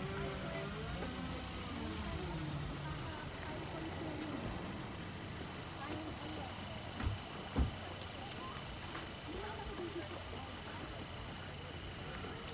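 People talking in the background outdoors over a steady low rumble, with two dull thumps about seven seconds in.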